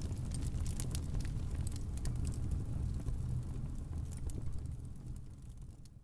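Fire-and-sparks sound effect: a steady low rumble with scattered crackles, fading out near the end.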